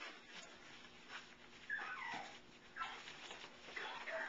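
Bouvier puppy whimpering: about three short, high whines that fall in pitch.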